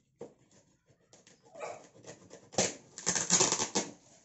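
White plastic packaging wrap crinkling and tearing as a parcel is ripped open by hand, rising to a loud, rapid crackling in the second half.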